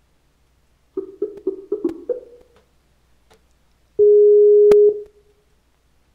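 Telephone tones as a call is placed: a quick run of about six short low beeps, then one steady low beep lasting about a second, with a sharp click partway through it.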